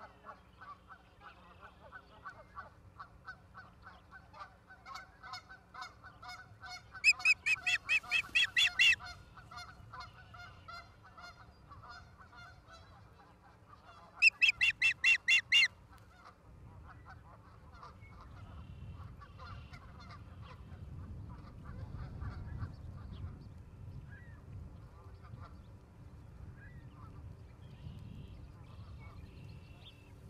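Ospreys calling: a long run of quick, repeated chirps, broken by two loud bursts of fast, high whistled notes, each lasting about two seconds, near the middle. The calling stops after the second burst and a low steady rumble follows.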